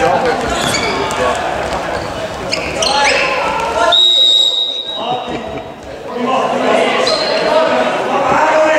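Indoor handball game heard in an echoing sports hall: players and spectators shouting, the ball bouncing on the court floor, and a referee's whistle blown once for about a second, about four seconds in.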